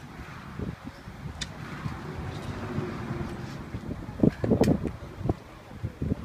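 Outdoor ambience of wind buffeting the microphone, with faint distant voices and a brief raised voice about four seconds in, and a couple of sharp clicks from handling the phone.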